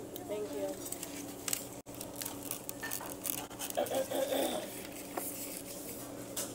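Quiet diner background: light clicks of cutlery and dishes over a steady low hum, with a faint voice speaking briefly about four seconds in.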